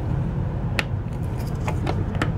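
Long Phillips screwdriver clicking against the stainless steel center screw of a Dometic toilet's spring cartridge as its tip is fished into the screw head by feel. A few sharp metallic clicks, one about a second in and two near the end, over a steady low hum.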